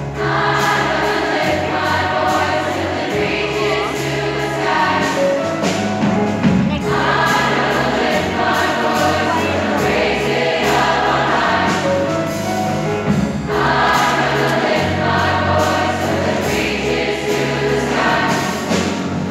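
Large youth choir singing a gospel-style song in full harmony, with piano and drum-kit accompaniment keeping a steady beat.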